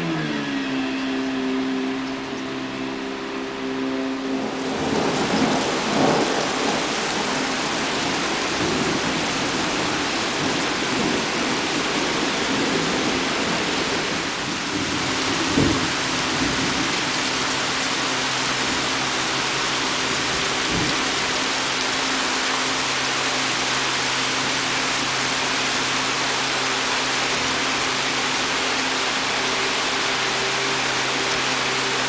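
Heavy rain pouring down in a thunderstorm, a dense steady hiss that sets in about four seconds in. Two or three short cracks of thunder break through around the middle. A low steady hum runs underneath, dropping in pitch at the start.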